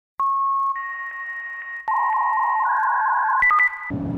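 Electronic intro sting of steady synthesized beep-like tones that step to new pitches every second or so, with sharp clicks at the changes, cutting off just before speech begins.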